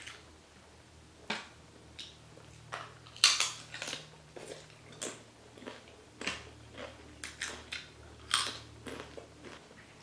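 Close-up crunching and chewing of crisp tortilla chips in the mouth: about a dozen short, irregular crunches, the loudest a little over three seconds in.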